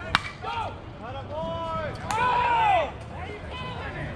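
Voices calling and shouting with long rise-and-fall tones, the loudest a drawn-out call lasting under a second near the middle, after a single sharp click just after the start.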